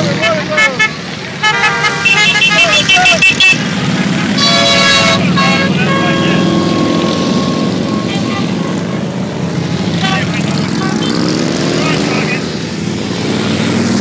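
A stream of motorcycles running past in a parade, with a rapid burst of horn toots about a second and a half in and a longer horn blast a couple of seconds later; engine revs rise near the end.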